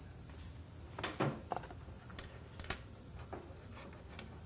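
A handful of sharp clicks and clatters, like small hard objects being handled, bunched between about one second in and near the end, over a steady low room hum.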